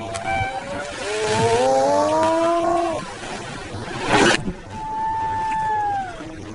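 A spectator's long, rising whooping call, then a brief loud rush of noise a little past halfway, followed by a long, steady, slightly falling whistle-like call near the end.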